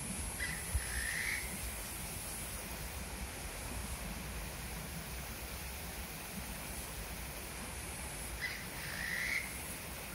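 A bird calling twice, the same short call each time, rising at its end, about eight seconds apart, over a steady high hiss of outdoor background.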